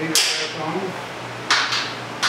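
Hand ratchet clicking in two short bursts, once just after the start and again near the end, as a bolt on a motorcycle's countershaft sprocket cover is snugged down.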